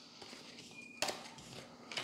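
Tarot cards handled on a cloth-covered table: a sharp tap about a second in, then faint rustling and sliding of cards.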